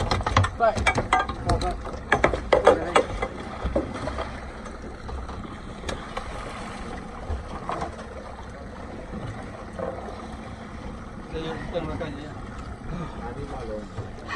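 A gaffed mahi-mahi thrashing at the boat's side: a quick run of knocks, thuds and splashes against the hull for the first few seconds. After that comes steady sea and wind noise with a few scattered knocks.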